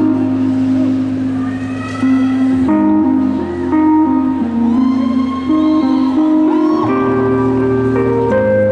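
A live band plays the instrumental opening of a bluegrass-style song, with banjo and bass guitar carrying a stepping melody over a low bass line.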